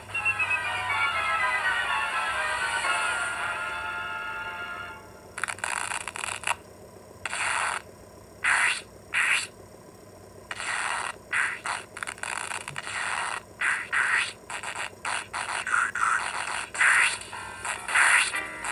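Cartoon soundtrack heard through a television speaker: a falling run of many notes for about the first five seconds, then a string of short, noisy bursts at irregular intervals for the rest.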